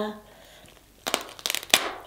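King crab leg shell cracking and snapping as it is broken apart by hand: a quick cluster of sharp cracks about halfway through, after a short lull.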